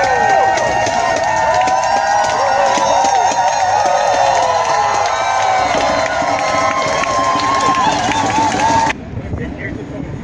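A marching crowd of protesters, many voices raised together in calls and shouts. About nine seconds in the sound cuts off abruptly to quieter background talk.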